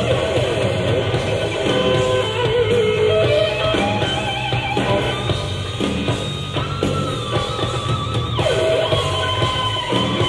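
Hard rock band playing live: electric guitar over bass and drums, with wavering vibrato notes and one long held high note in the second half.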